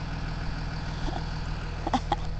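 A vehicle engine idling steadily: a low, even rumble.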